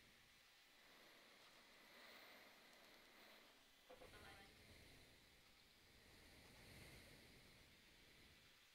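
Near silence: faint hiss and room tone, with a few faint clicks about four seconds in.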